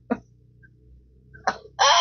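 After a quiet stretch, a woman breaks into a loud, high-pitched laugh near the end.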